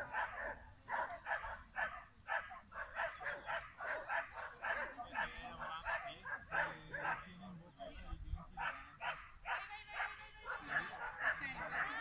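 A dog barking in a rapid, continuous run of short barks, several a second.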